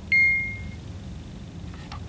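A single electronic beep just after the start, one clear tone that fades out in under a second, over a low steady hum, with a few faint clicks near the end.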